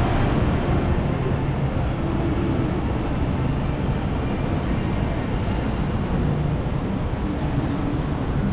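Steady city street ambience: a constant low rumble of road traffic with no distinct events.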